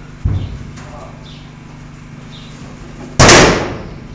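A duller knock just after the start, then one sudden, very loud bang about three seconds in that fades within half a second.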